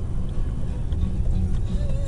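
Steady low rumble of a car driving slowly, engine and tyre noise heard from inside the cabin.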